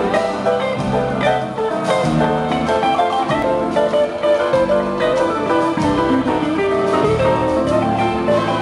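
Orchestra and band playing an instrumental passage, with violins and guitar.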